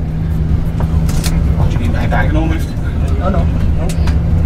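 Steady low rumble of a moving coach's engine and road noise, heard inside the passenger cabin, with faint voices chatting in the background.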